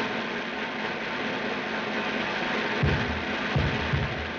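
Old film soundtrack: faint background music under heavy steady hiss, with three dull low thumps in the second half.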